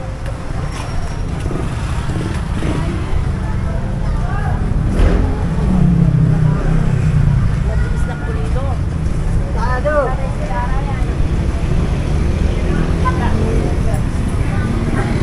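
Busy street ambience: a steady rumble of road traffic with motorcycles and cars, one vehicle passing close and loudest around six seconds in, and snatches of passers-by talking.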